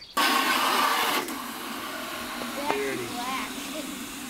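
Garden hose spraying water onto a car's body: a hiss that starts suddenly just after the start, loudest for about the first second, then runs on steadier and softer.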